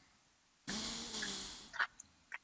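Outdoor street noise through the reporter's phone link: a hissing rush with a faint low hum cuts in about half a second after dead silence, lasts about a second and fades, with a short crackle near the end.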